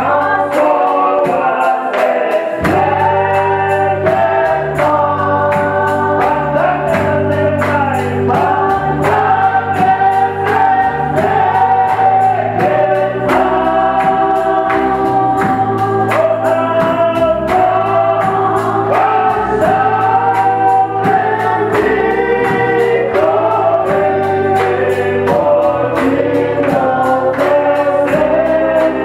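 Gospel worship song: several singers, women leading through microphones, with held notes over sustained instrumental backing and a steady percussive beat.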